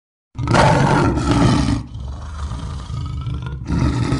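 Off-road vehicle engine revving hard, easing back to a lower rumble, then revving again near the end.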